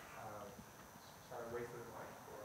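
Faint, off-microphone human voice: two short utterances about a second apart.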